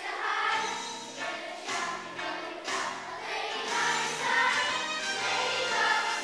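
Children's choir singing a song with instrumental accompaniment.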